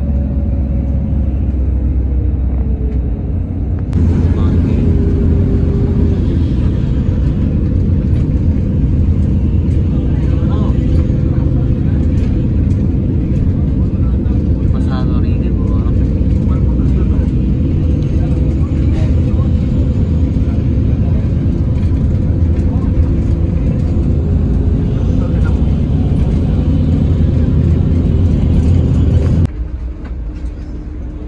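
Engine and road noise of a moving vehicle heard from inside it: a steady, loud low rumble with an engine hum. The sound gets louder abruptly about four seconds in and drops away just before the end.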